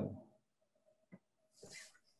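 A quiet pause on a video-call feed: a single faint click a little over a second in, then a brief soft hiss near the end.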